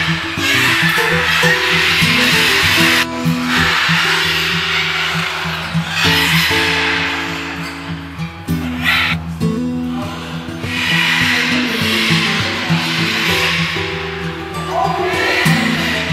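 Background music, with macaws squawking harshly over it several times.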